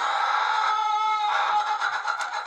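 Black-copper Marans hens calling in the coop: a steady, drawn-out vocalising, with a louder pitched call about a second in.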